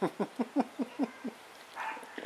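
A man laughing: a run of about seven short falling "ha"s that fade out.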